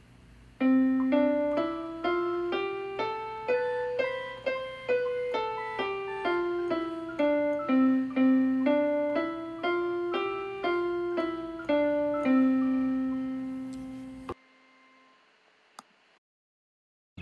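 Piano sound playing a C major scale one note at a time at an even, moderate pace: up an octave from middle C and back down, up to G and back down, ending on a long held C that stops abruptly.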